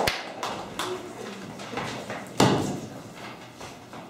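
Audience applause in a small theatre trailing off into a few scattered claps and knocks, with a single loud thump about two and a half seconds in.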